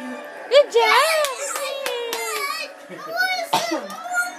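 Young children's excited voices, high-pitched calls and squeals, loudest about a second in and again near the end.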